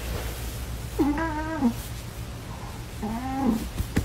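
A cat hidden under a blanket gives two drawn-out, wavering meows, the first about a second in and the second about three seconds in.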